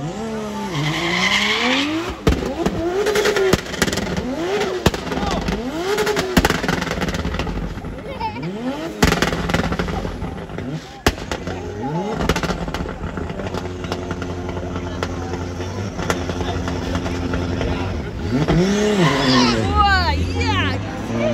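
Drift car engine revving hard up and down over and over as the car slides, with sharp cracks scattered through it and tyre noise under the engine. The revs hold steady for a few seconds past the middle before rising and falling again near the end.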